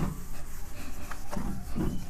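Whiteboard being wiped clean with a hand-held duster: several short, irregular rubbing strokes across the board.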